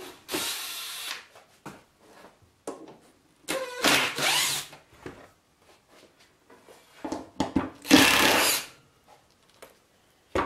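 Cordless impact driver running in three short bursts about a second long each, working the screws of a saw-mount hinge.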